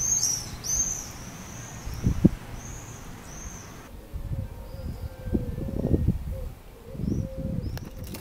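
Small birds chirping: a quick run of short, high, arched calls in the first half, then fainter, sparser calls after about four seconds. Low thuds and rumble sit underneath.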